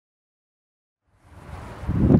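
Dead silence for about a second, then wind rumbling on the microphone fades in and grows louder.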